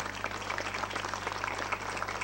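Audience applauding: many people clapping steadily.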